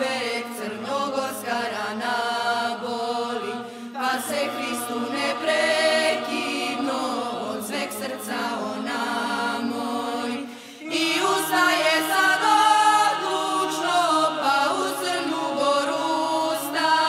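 A song sung in Serbian with musical backing, in several voices. The singing drops briefly, then comes back louder about eleven seconds in.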